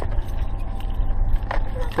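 Wind buffeting the microphone as a steady low rumble, with faint small clicks from keys and the lock of an RV's exterior storage-compartment door.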